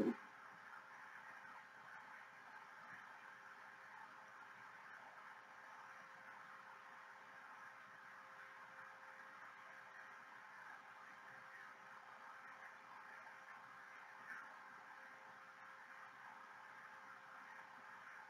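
Near silence: faint steady room tone with a low electrical hum.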